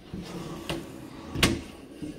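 A white closet door being opened: a light click, then a louder knock about a second and a half in.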